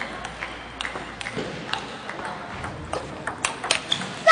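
Table tennis balls striking bats and tables: a run of sharp, unevenly spaced clicks, several close together near the end.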